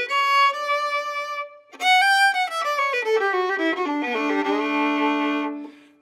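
Solo fiddle bowing a D scale: a held high note, a short break, then notes stepping downward to a long held low D.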